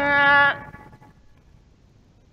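A man's melodic Quran recitation: a long, high note, held and stepping in pitch, ends abruptly about half a second in. After that there is only faint background noise.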